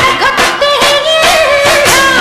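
Song music with a singing voice holding a long, wavering note through the middle, over a steady drum beat.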